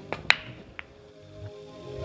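Soft background music with steady held notes, and three short sharp clicks in the first second, the loudest about a third of a second in.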